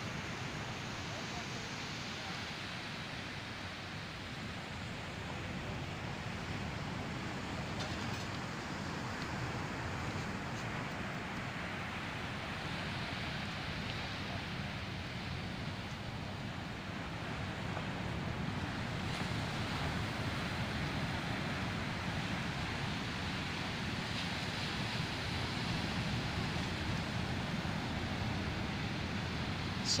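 Ocean surf breaking on a sandy beach: a steady wash of noise that swells and eases slowly, with wind rumbling on the microphone.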